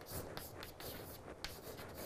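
Chalk writing on a chalkboard: a string of short, faint scratches and taps as hiragana strokes are drawn.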